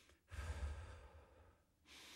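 A person breathing slowly and audibly: a louder breath out starts about a third of a second in and fades away, followed near the end by a quieter, even breath.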